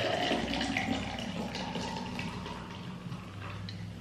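Carbonated energy drink poured from an aluminium can into a tall glass, splashing and foaming. It is loudest as the pour begins and tapers off as the glass fills.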